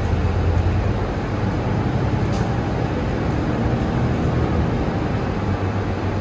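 Mercedes-Benz Citaro city bus driving, heard inside the passenger cabin: a steady low engine and drivetrain hum under road noise.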